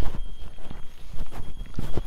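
Footsteps of a person walking on hard ground, about two steps a second, with a low rumble of camera handling.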